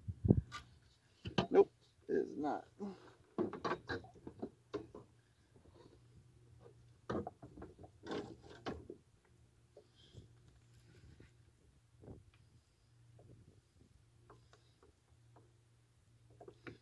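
Scattered knocks and clicks of handling in a kayak, with a few short bursts of a man's low voice, mostly in the first half; quieter later on.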